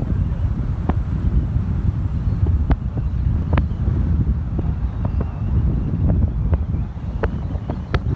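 Wind buffeting the microphone of a camera moving along a road in an open vehicle, a loud, steady low rumble with scattered sharp clicks through it.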